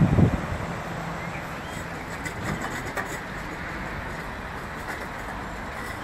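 Steady outdoor background noise, with a few faint clicks.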